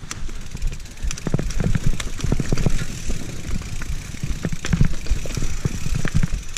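Mountain bike riding down a rough dirt forest trail: tyres running over dirt and roots, with a constant string of knocks and rattles from the bike over the bumps.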